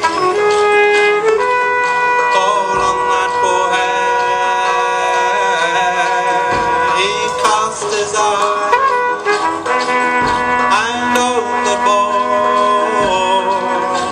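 Live band playing a traditional English folk song: a trumpet holding long notes over tabla drumming.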